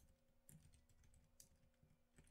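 Faint keystrokes on a computer keyboard, a few soft clicks barely above silence.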